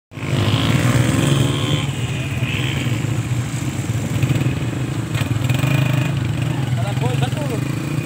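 Small motorcycles passing one after another at low speed, their engines running steadily, with men's voices calling out over them near the end.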